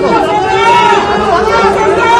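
Crowd chatter: many voices talking over one another at once, with no single voice standing out.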